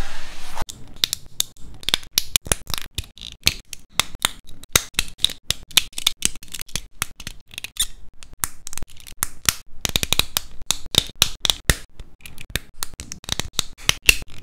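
Hard plastic model-kit parts clicking and snapping together in the hands: a fast run of sharp clicks, several a second, thickest about ten seconds in. It opens with a brief sweep of a hand across the work mat.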